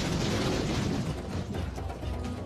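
Rumbling rockfall sound effect: rocks and dirt collapsing with a steady roar of debris that eases off toward the end.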